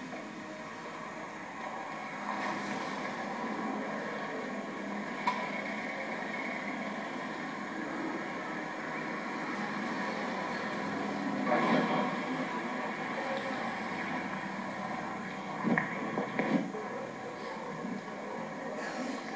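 Steady rushing background noise, with a few brief knocks about five, twelve and sixteen seconds in.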